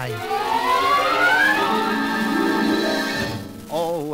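An orchestral music cue from a 1952 Decca narration-with-orchestra record. A pitched line glides steadily upward over the first second and a half, then the orchestra holds a full chord that fades out about three and a half seconds in.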